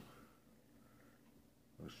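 Near silence: faint room tone, with a man's voice starting a word near the end.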